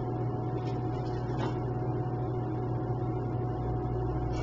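Steady low hum with a faint, thin high tone above it, and a couple of faint clicks: room tone with no speech.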